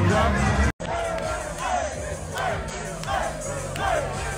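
Loud music with heavy bass cuts off abruptly under a second in. A crowd of football players then shouts and chants together in a steady rhythm, about two shouts a second, over music underneath.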